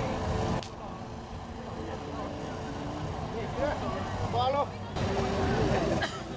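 Outdoor ambience: a steady low hum with a few short voices calling out across the field, loudest near the middle.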